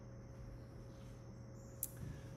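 Quiet room tone with a faint steady electrical hum, and one short sharp click near the end.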